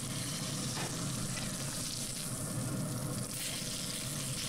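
Bone-in ribeye steak searing in a hot cast-iron skillet of butter with garlic and thyme, sizzling steadily.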